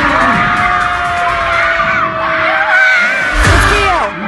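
A boy's long held cheering yell, with other high wavering shrieks joining near the end, over background music.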